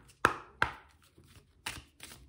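Deck of oracle cards being shuffled by hand: sharp card clacks, two loud ones close together in the first second and another near the end.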